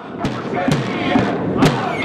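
Large bass drum struck in a few heavy, unevenly spaced beats, over a crowd of protesters shouting.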